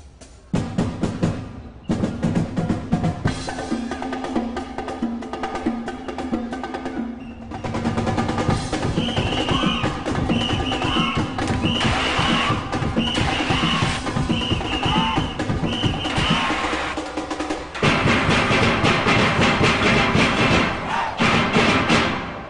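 Steel orchestra playing live: massed steelpans over a percussion section of drums, with a steady rhythm. The music grows louder for the last few seconds.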